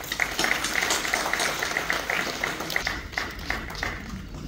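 Audience applauding: dense, irregular clapping that thins out and gets quieter towards the end.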